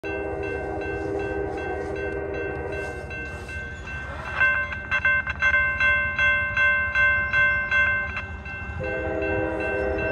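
A distant Norfolk Southern freight locomotive's multi-chime horn sounds a long blast, breaks off about three seconds in, and starts again near the end. Meanwhile a grade-crossing bell rings rapidly, about three strokes a second, and is loudest from about four to eight seconds.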